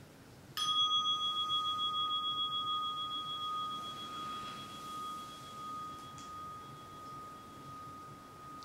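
A meditation bell struck once about half a second in, ringing on with two clear tones in a slow, wavering decay; it marks the end of the sitting.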